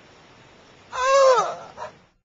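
A high whimpering cry: one call about a second in that rises and then falls in pitch, trailing off, with a brief faint sound just before the end.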